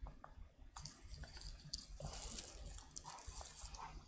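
Close, scratchy rustling that starts about a second in and lasts about three seconds, with small crackles through it: hand and body movement near the microphone.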